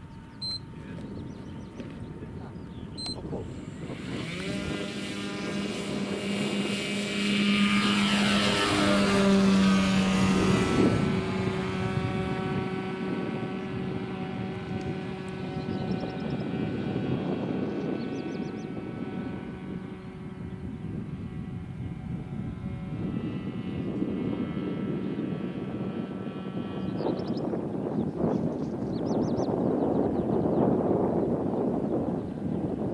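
The electric motor and propeller of a quarter-scale RC Piper J-3 Cub tow plane run at full power through an aerotow takeoff and climb. The whine, made of several steady tones, builds about four seconds in. It is loudest from about eight to eleven seconds, when its pitch falls as it passes close, and it then carries on more faintly as the plane climbs away.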